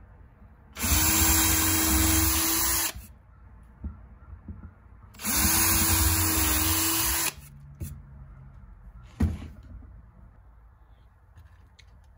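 Electric drill boring nail pilot holes through a wooden board into its feet: two runs of about two seconds each, the motor spinning up to a steady whine and cutting off. A single knock follows a couple of seconds after the second run.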